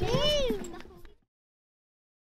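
A child's voice calls out once, its pitch rising then falling, with other children's voices behind it; the sound fades away and cuts to dead silence about a second in.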